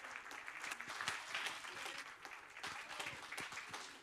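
Audience and panel applauding, a dense patter of hand claps that thins out toward the end.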